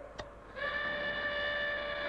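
A button click, then the amber alert warning: a single steady alarm tone over launch-area loudspeakers, starting about half a second in and held for about a second and a half.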